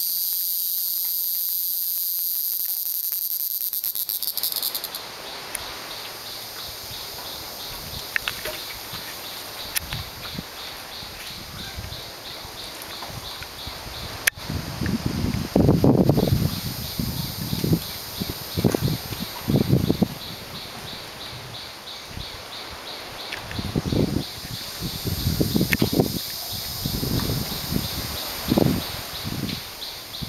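Insects buzzing steadily in the forest, with a fast pulsing trill, much louder in the first four seconds. From about halfway on, irregular low rustles and thumps come and go, and they are the loudest sounds.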